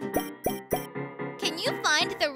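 Children's background music with three quick pop sound effects in the first second, then a high, lively voice starting to speak over the music.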